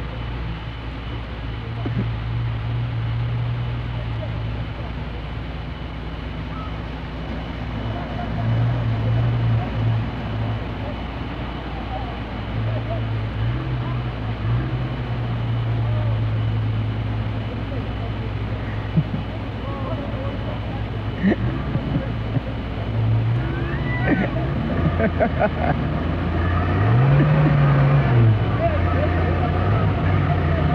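Engine of a vehicle stuck in floodwater, running and revved in steps as it is pushed free, with a rise and fall in revs near the end, over a steady rushing noise. Men shout in the last few seconds.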